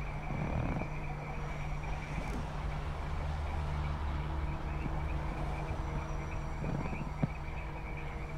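Frogs calling in a steady chorus, over a low steady hum, with one short click about seven seconds in.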